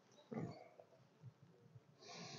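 Near silence, broken about a third of a second in by a single short grunt-like sound from a person, with a few faint low knocks after it.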